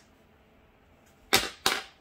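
Two short, sharp knocks about a third of a second apart, a little over a second in, the first the louder, like a small object handled on a desk.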